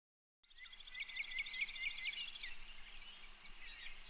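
A songbird singing outdoors: after a moment of silence, a rapid high trill of repeated notes for about two seconds, then scattered fainter chirps over faint steady outdoor background noise.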